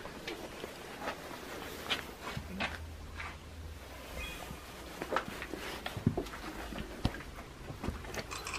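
Footsteps and small scattered clicks and knocks of people moving through a cluttered basement, faint, with a low background rumble.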